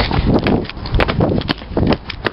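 Running footsteps on a dirt path and stone paving: heavy footfalls about twice a second, with rustle and low rumble from the handheld camera moving with the runner.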